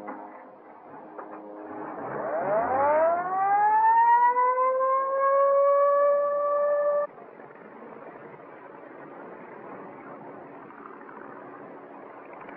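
Ambulance siren winding up, its wail rising in pitch and levelling off into a steady tone for a few seconds, then cutting off abruptly. A fainter steady hiss follows.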